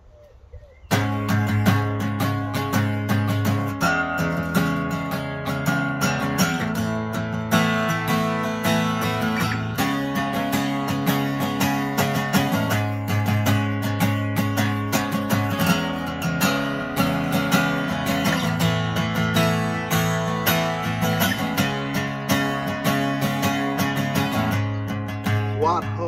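Acoustic guitar strumming a repeating chord pattern as the song's introduction. It starts suddenly about a second in.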